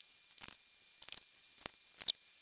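Cardstock being cut along a straight-edge cutting tool: a few faint clicks and taps about half a second apart.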